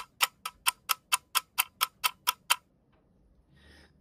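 Countdown clock-ticking sound effect: fast, even ticks at about four a second, stopping about two and a half seconds in.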